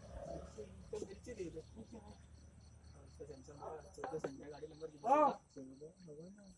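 Crickets chirping in a steady high pulsing trill, under low background voices. About five seconds in, a short vocal sound rises and falls in pitch, the loudest sound here.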